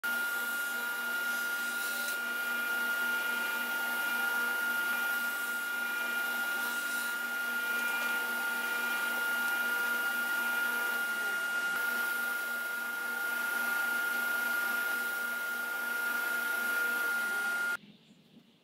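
Powermatic table saw running freely without cutting: a steady motor-and-blade whine with one strong high tone that holds throughout. It cuts off suddenly just before the end.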